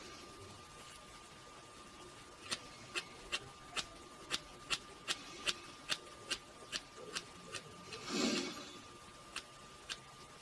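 Steel hair scissors snipping through a lock of hair: a quick run of about a dozen crisp snips, roughly two to three a second, then a short rustling noise a little after the middle and two more snips near the end.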